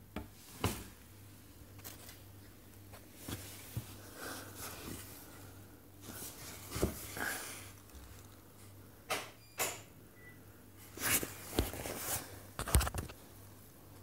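Scattered soft knocks and clicks of handling noise, about a dozen, with a quick cluster near the end, over a faint steady low hum.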